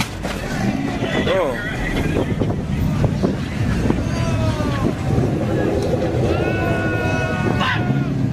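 People's voices, with pitch rising and falling, over a steady low rumble. A held, even-pitched voice tone comes about six seconds in.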